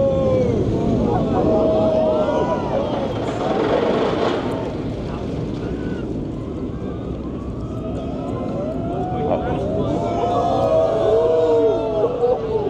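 A crowd of onlookers cheering and whooping, many voices at once, easing off in the middle and swelling again near the end. A brief rush of noise comes through about four seconds in.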